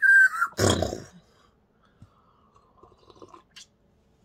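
A person whistling a short tone that rises and then holds, followed about half a second in by a loud, noisy mouth-made crash sound effect lasting about half a second. Then only faint rustling.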